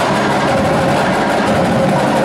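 Marching drumline of tenor and bass drums playing a sustained, dense roll: a steady, loud rumble of rapid strokes.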